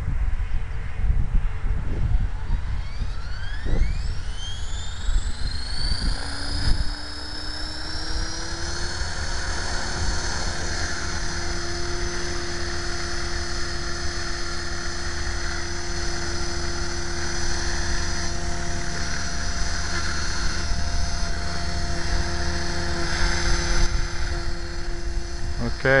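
Electric Align T-Rex 500 RC helicopter spooling up: the motor and rotor whine climbs in pitch for about seven seconds, then holds steady as the helicopter hovers.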